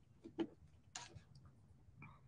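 A few faint clicks and light taps of hands handling small craft pieces on a work table, the loudest near the start.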